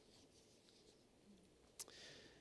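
Near silence: room tone with one faint click near the end.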